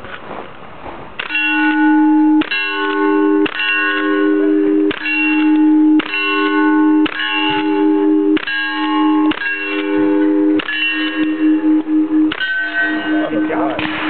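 About ten lever-action rifle shots fired roughly a second apart, each followed by the clang of a steel target being hit, ringing on for about a second. Different plates ring at different pitches.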